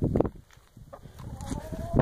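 Chicken hens vocalizing close by, with one drawn-out call that drifts slowly upward in pitch through the second half.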